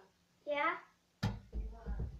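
A young girl's brief wordless vocal sound, then a sharp thump a little over a second in, followed by low thudding and more soft vocal sounds.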